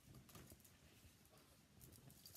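Near silence, with faint rustling and a few soft taps of linen fabric being folded by hand.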